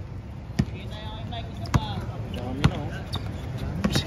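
A basketball being dribbled on a hard outdoor court: four sharp bounces about a second apart.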